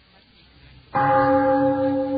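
A short near-silent gap, then a single bell-like stroke about a second in that rings on with a few steady tones, slowly fading.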